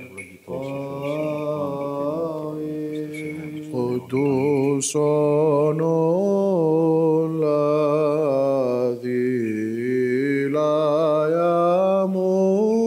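A solo male voice chanting an Orthodox liturgical hymn in Byzantine style. The lines are slow and melismatic, with long held notes and ornamented pitch turns, briefly broken near the start and again around nine seconds in.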